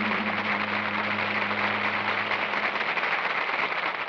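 Studio audience applauding at the end of a song, with the orchestra's low final held chord under it fading out about two-thirds of the way through.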